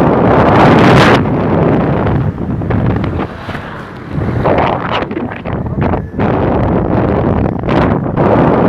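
Wind buffeting the microphone of a camera on a moving vehicle, with vehicle and road noise underneath. It swells and drops unevenly, loudest about a second in and dipping for a moment midway.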